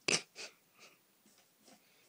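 A plastic bag rustling in a few short bursts as a cat paws and noses into it. The loudest rustle comes right at the start, a smaller one about half a second in, and fainter ones after that.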